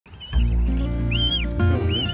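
Background music with a steady low bass, and over it a cygnet's high peeping calls, each rising and falling, about three times.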